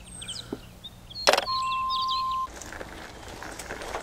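A sharp click, then a steady electronic beep lasting about a second: a phone call being hung up. Faint bird chirps sound in the background.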